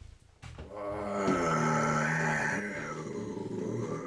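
A long, low, pitched vocal growl held for about four seconds, starting about half a second in: a demonic voice of the kind used for a possessed character.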